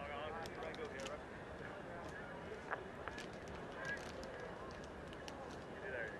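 Cricket stadium crowd ambience: a steady murmur of many voices with wavering shouts or calls early on, and scattered claps.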